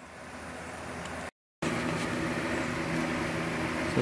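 Steady mechanical hum holding a few even tones, broken by a brief total dropout just over a second in.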